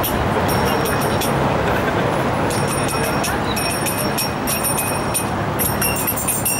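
Steady city street noise: traffic running and people talking nearby, with short, high, thin squeals coming and going over it.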